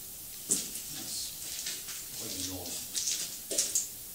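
Quiet, indistinct voices, with short hissing sounds about half a second in and again near the end.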